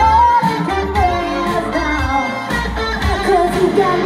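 A live rock band: a woman sings the lead vocal over electric guitar and the full band.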